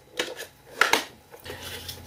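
Two light taps, about half a second apart, of a card and a bone folder being handled on a plastic scoring board.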